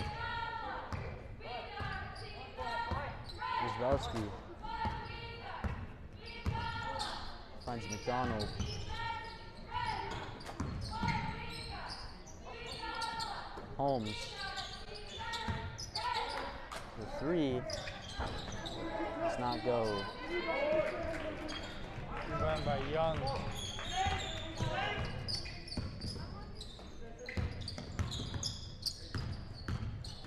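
A basketball being dribbled on a hardwood gym floor, with sneakers squeaking as players cut, echoing in a large gym alongside voices.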